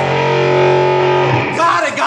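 A strummed guitar chord held and ringing, stopping about a second and a half in, followed by a man's voice.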